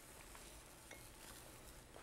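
Near silence, with a few faint light ticks from a spoon and seasoning being handled over a bowl of sausage mixture.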